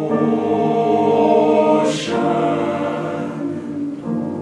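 A high school men's vocal ensemble singing long, held chords in several parts, swelling and then easing off. There is a brief hiss near the middle.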